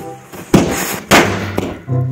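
A bundle of small red firecrackers going off: two loud bangs about half a second apart, then a smaller pop, with background brass music returning near the end.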